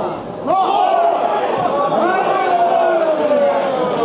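A man's voice, as in broadcast match commentary, with one long drawn-out call that falls slowly in pitch over about three seconds.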